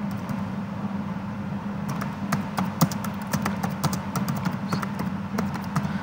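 Typing on a computer keyboard: a quick, uneven run of key clicks from about two seconds in until near the end, over a steady low hum.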